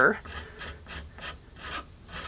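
A knife blade used as a scraper, rasping dried glue off the wooden edge of a snakeskin-backed bow in short repeated strokes, about four a second.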